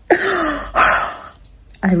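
A woman's breathy laugh: two short, noisy exhaled bursts in the first second or so, then speech resumes near the end.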